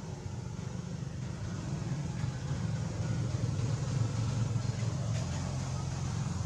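A steady low rumble like a vehicle engine running, getting slightly louder partway through.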